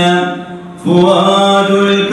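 Male chanting of a devotional Arabic poem in long, held notes. The chant drops away briefly soon after the start and comes back in just under a second in.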